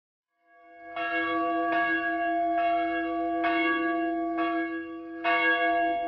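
A church bell tolling, struck about once every 0.9 seconds, each stroke ringing on into the next. It comes in about a second in.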